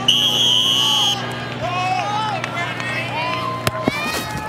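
A high steady whistle blast lasting about a second, then faint crowd chatter over a steady low hum, with one sharp knock near the end.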